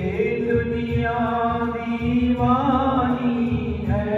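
A man singing a Hindi devotional bhajan in long held notes, accompanied by an electronic keyboard.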